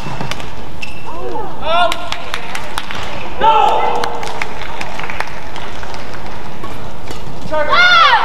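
Badminton rally: sharp clicks of rackets striking the shuttlecock, with bursts of shoe squeaks on the court mat about a second in, midway and near the end, over steady arena background noise.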